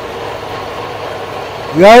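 Bench drill press running with a steady hum while its bit is hand-fed and pressed into the work. A man starts talking near the end.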